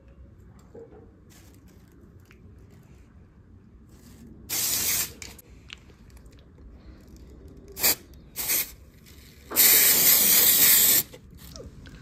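Aerosol can of coloured hair spray hissing in bursts: one spray of about half a second, two short puffs a few seconds later, then a longer spray of about a second and a half near the end.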